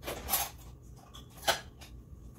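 Household handling noises out of sight: a brief rustling scrape, then a single sharp click or knock about one and a half seconds in.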